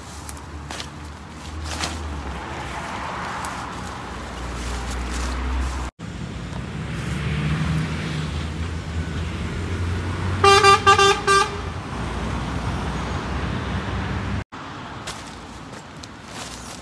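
Steady rumble of road traffic on a busy roundabout, with a vehicle horn sounding a quick run of about four short toots about ten seconds in.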